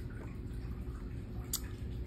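Low steady room noise and hum, with a single small, sharp click about one and a half seconds in.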